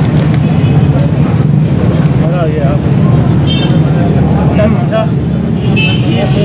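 Busy street ambience: a steady low rumble of vehicle engines and traffic, with other people's voices talking in the background.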